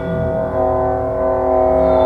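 Contemporary chamber ensemble music: a sustained chord of several steady held tones that swells about half a second in, over a low drone.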